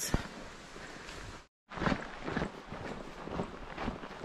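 Footsteps of a hiker walking through grass on a trail, with soft irregular steps and rustling. The sound drops out completely for a moment about a second and a half in, then the steps carry on.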